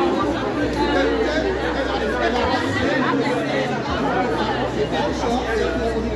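Crowd chatter: many voices talking at once, none standing out, over a low steady hum.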